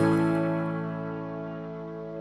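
Background music: a held chord rings on and slowly fades after the singing stops.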